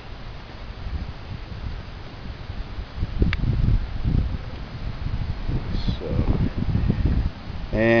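Low, irregular rumble of handling noise on a hand-held camera's microphone as it is pushed in among tomato foliage, heaviest from about three to seven seconds in, with one sharp click about three seconds in.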